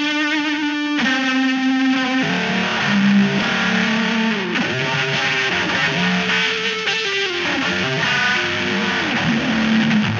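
Distorted electric guitar played through the Boredbrain Transmutron pedal in Fallout mode. This is a wide resonant notch filter whose split point is swept at audio rate by CV from a looping envelope, giving the held notes a fast warbling, buzzing texture. The notes slide and bend in pitch several times, with extra distortion from an Arturia Microbrute's Brute Factor in the effects loop.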